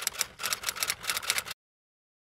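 Typewriter key-click sound effect: a quick run of clicks, about seven a second, that cuts off suddenly about one and a half seconds in.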